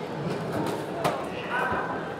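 Hubbub of crowd chatter in a large exhibition hall, with one short sharp knock about a second in.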